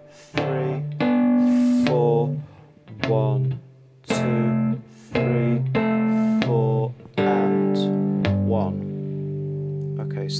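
Three-string cigar box guitar in open G tuning, fingerpicked: fretted two-note blues shapes plucked in a steady rhythm, then a chord left ringing for the last few seconds.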